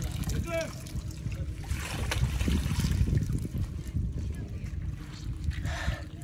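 Water splashing and dripping off a man as he climbs out of an ice-water stock tank, with wind rumbling on the microphone. A brief voice is heard near the start and again at the end.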